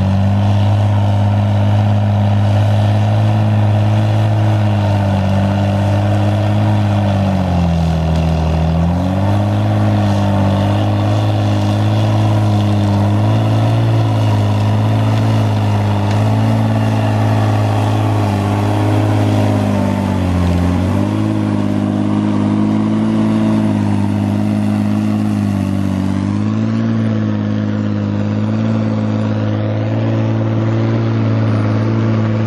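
Tigercat 635D grapple skidder's diesel engine running hard under load while dragging a grapple full of trees. The engine pitch sags twice, about a third of the way in and again past the middle, and climbs back each time as the machine pulls.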